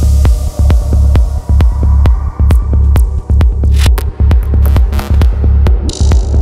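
Dark progressive psytrance: a loud, deep pulsing bassline under an even kick-drum beat, about two hits a second, with crisp hi-hat clicks. A high noise wash fades out during the first couple of seconds.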